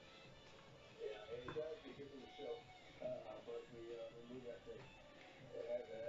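Faint background music with a voice over it, played from a television; the voice comes in about a second in.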